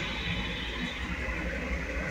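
Steady low background hum with a faint even hiss, with no clicks or beeps standing out.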